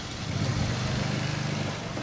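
An engine running steadily nearby, a low even hum that swells slightly and fades near the end.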